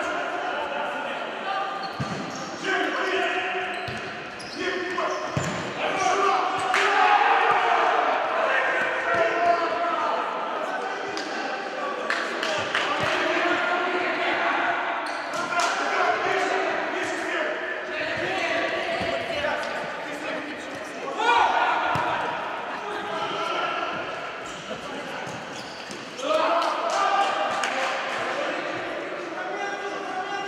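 Futsal ball being kicked and bouncing on a sports-hall floor, a few sharp thuds, under voices of players and spectators echoing in the large hall.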